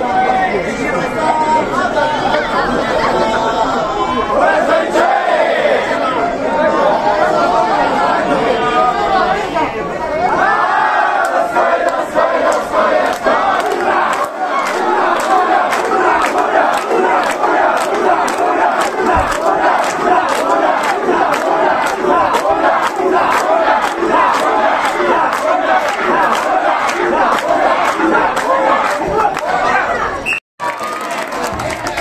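Large crowd of Japanese festival mikoshi bearers shouting together. About ten seconds in, rhythmic hand clapping starts, about two claps a second, with the shouting pulsing in time to it as a chant.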